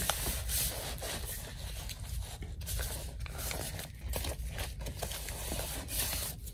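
Hands rubbing and pressing a paper piece down onto a glued paper journal page: an irregular dry rustling and scraping of paper, made of many short strokes.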